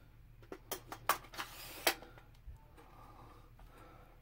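A few light clicks and knocks, about five in the first two seconds, from handling an AR-15 lower receiver and a polymer A2 stock while readying the stock to slide onto the buffer tube.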